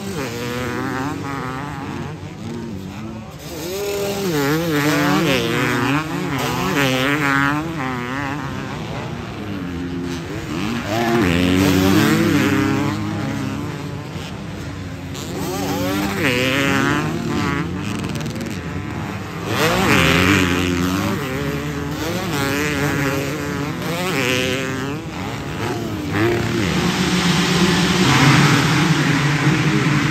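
Several motocross dirt bikes racing, their engines buzzing and revving up and down as riders accelerate and back off over the jumps. Bikes grow loud as they pass close a few times.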